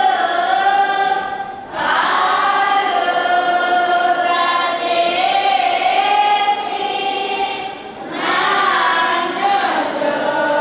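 Choir singing a hymn in long, held phrases, with two short breaks between phrases, just under two seconds in and about eight seconds in.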